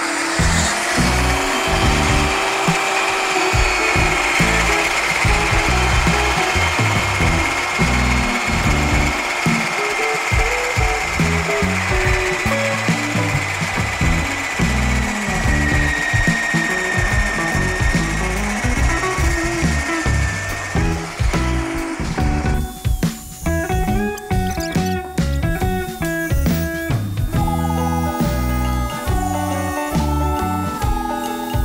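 Mafell Z 5 Ec portable carpenter's band saw cutting through a thick timber beam, a steady high whine, over background music with a beat. About 22 seconds in the saw noise drops away and the music carries on.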